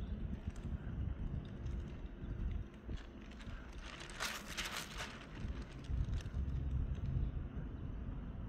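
Low handling rumble as a painted canvas is tilted to spread poured acrylic paint, with a few faint clicks and a brief rustle about four seconds in.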